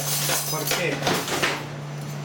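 Metal teaspoons clinking and clattering as two are picked up, with a steady low hum underneath.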